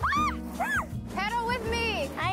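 Music playing, with high voices gliding up and down over it: two short rise-and-fall cries in the first second, then a longer wavering one from about halfway.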